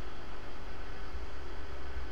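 Steady background hum and hiss: a low, even drone with no distinct events.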